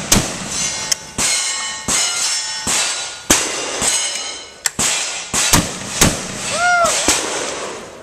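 A string of shotgun shots fired in quick succession, roughly one every half second to second, several followed by a ringing clang.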